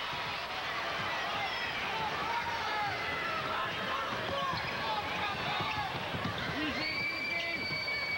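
Basketball game in a gymnasium: crowd noise and shouting, a basketball being dribbled on the hardwood floor, and sneakers squeaking. Near the end a steady high whistle-like tone sounds for about a second and a half.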